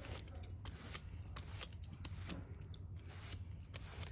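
A paint-loaded brayer rolling back and forth over a gel printing plate: a sticky, tacky rolling noise in short repeated strokes, about three or four a second.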